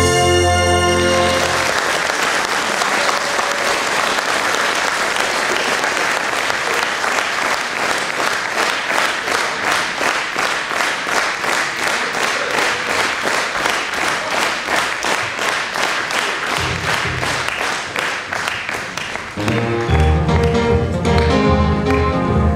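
A trumpet-led band number ends about a second in. Audience applause follows and settles into steady rhythmic clapping in unison, a little over two claps a second. Near the end the ensemble starts its next piece, with plucked strings.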